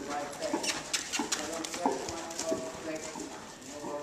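Horse's hoofbeats on the soft sand footing of an indoor riding arena, irregular soft strikes, with a low voice talking in the background.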